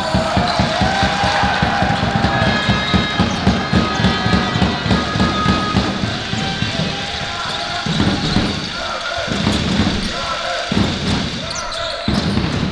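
Basketball game on a hardwood court: the ball bouncing on the floor in quick, repeated knocks, with sneakers squeaking as players cut and stop.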